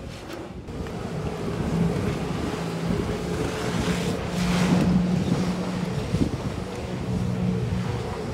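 Jet ski engine running out on the water with a steady drone, louder about halfway through, with wind on the microphone.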